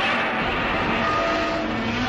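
A projector switched on and running: a steady mechanical whirring noise with a few faint steady tones in it.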